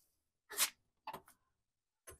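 A motorhome's exterior storage compartment being opened: a short swish about half a second in, then a few quick clicks just after a second in as the latch and door are worked.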